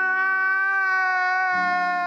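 A long held pitched note, dropping very slightly in pitch, added in the edit as a comic sound effect. A second, lower note joins about one and a half seconds in.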